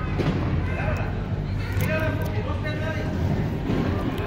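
Indistinct voices of spectators and children carrying across a school gymnasium, over a steady low hum.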